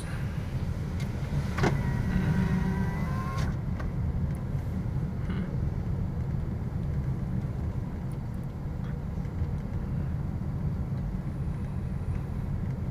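A car driving slowly, heard from inside the cabin as a steady low rumble of engine and tyres. From about two seconds in, a short whine lasts under two seconds, with a click as it starts and another as it stops.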